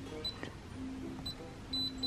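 Short high beeps from a digital door lock's touch keypad as keys are pressed, ending in a quick double beep as the lock rejects the code, over faint background music.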